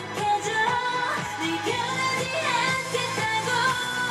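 K-pop dance song with female singing over a steady beat, played loud through the stage's sound system.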